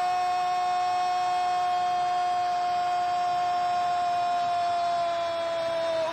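Football TV narrator's long, drawn-out goal cry ("Goooool"), one held shouted vowel at a steady pitch that sags slightly and breaks off near the end.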